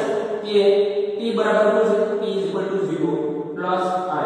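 Speech only: a man talking in long, drawn-out phrases.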